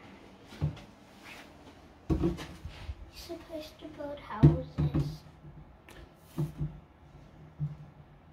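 Knocks and clatter of toy castle building blocks being picked out of a wooden box and set down on a castle model: several separate knocks, the loudest about halfway through.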